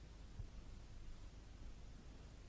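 Near silence: a faint steady low hum and hiss of recording noise, with no voice.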